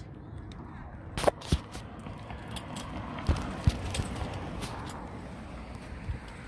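Steady outdoor background noise with a few sharp knocks and bumps from a handheld phone being handled. The loudest knock comes about a second in, and two more come between three and four seconds.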